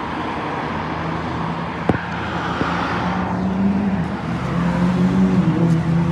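Road traffic going by: a steady wash of car noise with a low engine hum that swells about three and a half seconds in and again near the end. A single sharp click comes about two seconds in.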